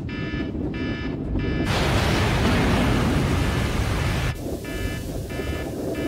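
Submarine alarm sounding in repeated pulses of a buzzing, many-pitched tone. About two seconds in, a loud roaring blast of noise drowns it out; the blast is the sign of an explosion aboard. It cuts off sharply after about two and a half seconds, and the alarm goes on.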